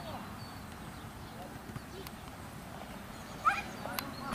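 Faint distant voices over steady outdoor background noise on a football pitch. A short, sharp, louder sound comes about three and a half seconds in.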